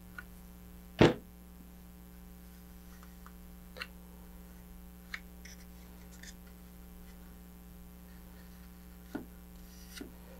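Steady electrical mains hum, broken by one sharp knock about a second in and a few faint clicks and taps as hands handle a model rocket's paper-tube fin can.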